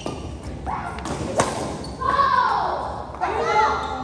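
A badminton racket strikes a shuttlecock with a sharp crack about a second and a half in. A player's loud voice then calls out for a second or two, echoing in the large hall.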